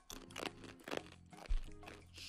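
Lotus root chip crunching as it is bitten and chewed, a few sharp crunches in a row. A soft music bed plays underneath.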